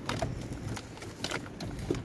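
A few light clicks and knocks of parts being handled in an engine bay, scattered over about two seconds against a faint steady background.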